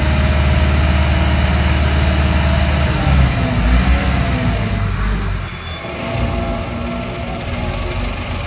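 An engine running with a steady low rumble, which wavers about three seconds in and eases a little after about five seconds.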